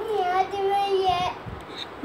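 A high-pitched voice drawing out one long word, "ye", at a nearly steady pitch for a little over a second, then stopping.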